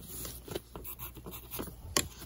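Pencil marking a paper pattern laid against a plastic ruler: a few light, short scratching strokes, then a sharp click near the end.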